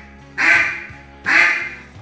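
Easy-blowing double-reed duck call (Zink ATM) blown in the basic single quack, twice, about a second apart; each quack starts sharply and trails off.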